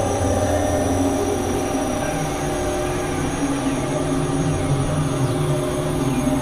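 Experimental synthesizer drone music: many sustained, clashing tones layered over a dense noisy wash, steady in level, with a few faint gliding pitches high up.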